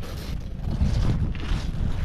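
Wind buffeting the microphone in a steady low rumble, getting louder partway through, with the rustle of a heavy canvas jacket as the wearer turns and crouches.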